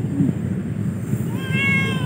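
Domestic cat meowing: a short low chirp just after the start, then a higher, drawn-out meow in the second half.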